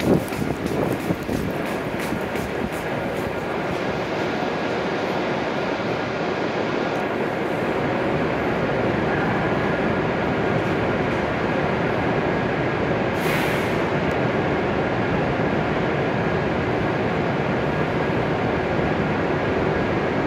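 Steady hum and rush of an E7-series Shinkansen train standing at the platform, with a short hiss about 13 seconds in.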